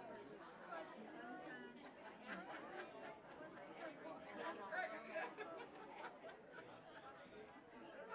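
Faint chatter of many people talking at once, no single voice standing out: a congregation visiting before the service starts.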